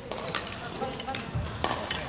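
Several sharp hits of badminton racket strings on shuttlecocks in a large sports hall, with voices in the background.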